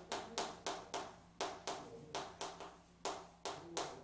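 Chalk writing on a chalkboard: a quick series of sharp taps, about three to four a second, as each stroke of the characters hits the board.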